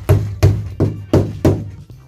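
A hammer striking a wooden post five times, about three blows a second, each a sharp knock with a low, resonant thud from the timber frame.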